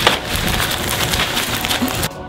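Bags of ice crunching and plastic rustling as they are carried and swung, with a sharp knock right at the start.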